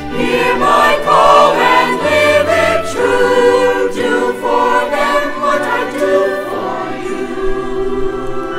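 Mixed choir of men's and women's voices singing together.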